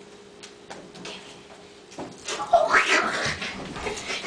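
Quiet for about two seconds, then a loud, high, wavering vocal cry with sliding pitch.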